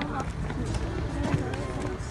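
Footsteps of a person walking in sandals, on wooden boardwalk planks and then onto a paved path near the end. People's voices are talking throughout.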